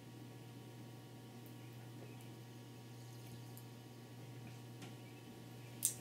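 A man swallowing soda from a plastic bottle: faint gulps and small liquid clicks over a steady low room hum. A short sharper sound comes near the end.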